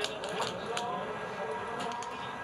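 Outdoor background at a ski-jump start: a steady low hum with faint, distant voices and a few small clicks.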